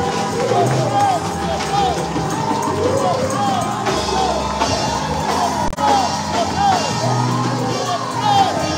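Live church praise music: an electronic keyboard holding steady chords under singers on microphones, with many voices calling out in short rising and falling cries.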